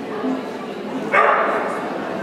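A dog barks once, sharply, about a second in, over a background of crowd chatter.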